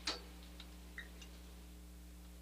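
Quiet room hum with a few soft ticks and rustles from sheets of paper notes being handled and leafed through.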